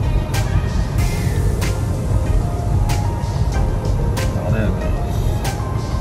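Music with vocals and a beat playing from the car's stereo inside the cabin, over the steady low rumble of the car driving.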